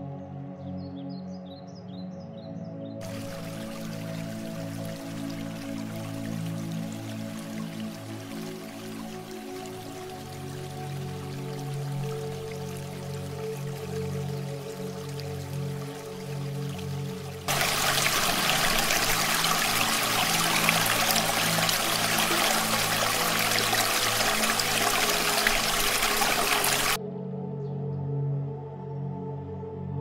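Rushing of a rocky mountain stream under steady background music. The water comes in suddenly about three seconds in, jumps much louder about seventeen seconds in, and stops abruptly a second before the end. Birds chirp briefly at the start.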